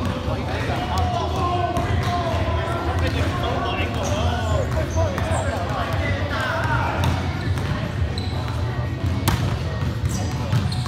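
Indoor gym ambience during a volleyball game: several players' voices talking and calling in a reverberant hall, with scattered ball thumps on the hard floor. A sharp slap near the end as the volleyball is struck on the serve.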